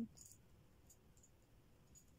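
Near silence with a few faint, light clicks of the small metal override keys of a mini digital safe being handled in the fingers.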